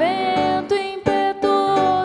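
A woman singing a religious song, holding long notes, with a grand piano accompanying her in struck chords.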